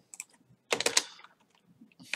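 Computer keyboard keystrokes: a couple of taps near the start, then a quick cluster of key clicks about a second in.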